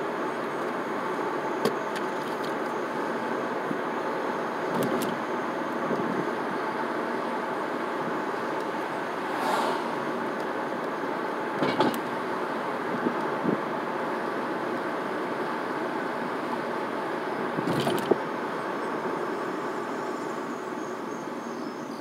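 Car cruising at a steady speed of about 33 mph, heard from inside the cabin: a steady hum of engine and road noise, with a few scattered sharp clicks and knocks.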